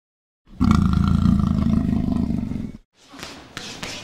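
A loud roar sound effect, starting about half a second in and cutting off abruptly about two seconds later, followed by fainter scattered knocks and clicks.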